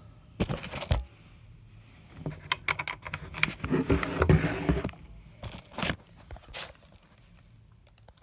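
Handling noises as a chipped lens adapter is taken from its packaging and fitted to a Canon camera to test the chip: rustling of plastic packaging, then three separate sharp clicks.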